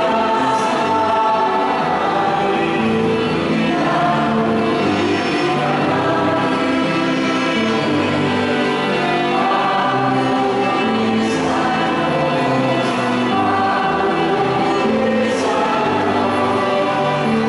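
A church choir singing a hymn in held, sustained notes.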